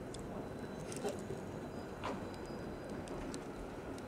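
Steady urban street background hum, with a few faint short clicks about one, two and three seconds in.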